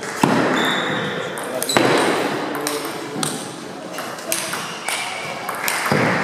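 Table tennis ball knocking off bats and the table in a rally: sharp clicks at uneven gaps of roughly half a second to a second and a half, over the background voices of a large hall.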